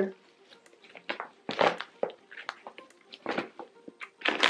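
Fabric stroller organizer being handled and turned over: short, intermittent rustles of cloth with quiet gaps between them.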